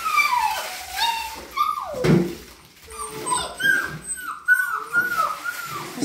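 Young puppies, about five and a half weeks old, whining and whimpering: high drawn-out whines early on, a louder cry about two seconds in, then a run of about seven short rising-and-falling whines.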